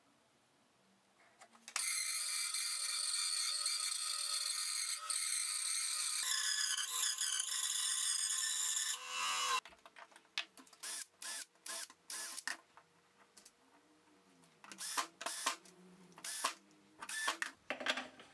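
A power saw cutting a square wooden blank round: about eight seconds of loud, high-pitched, steady cutting noise that starts about two seconds in and stops suddenly. After it comes a run of small metallic clicks and taps as a steel lathe faceplate is fitted to the disc.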